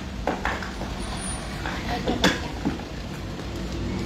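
Metal clicks from the refrigerated van's rear door latch being worked, with one sharp clack a little past halfway, over a steady rumble of traffic.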